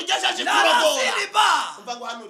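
Speech only: a man talking in Kinyarwanda, quick and continuous.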